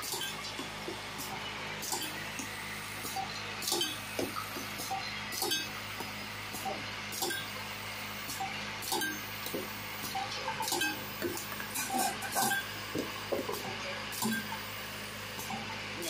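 Steady hum of a running machine, the laser marker's vibratory bowl feeder, with irregular light clicks and clinks of small plastic electronic parts knocking together.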